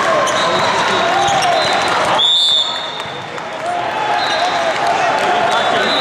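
Volleyball game noise in a large echoing hall: a steady din of many voices and shouted calls, sneakers squeaking and balls being struck on the court. A short, high referee's whistle sounds a little over two seconds in, and the noise dips briefly after it.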